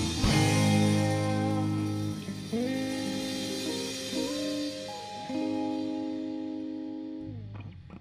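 Electric guitar closing a song: a chord rings out, then a few held notes slide up into pitch one after another and fade, stopping shortly before the end, followed by a couple of small clicks.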